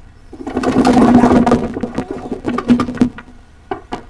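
A long, rasping wooden creak with a steady pitch as a backyard playset's wooden climbing wall gives under a man's weight, lasting nearly three seconds. A short creak comes again near the end. The flimsy wall is yielding to the load.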